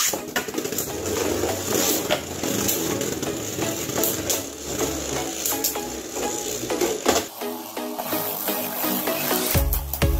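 Two Beyblade spinning tops launched into a plastic stadium at the start, then spinning and clacking against each other and the stadium wall in many sharp clicks, over background music.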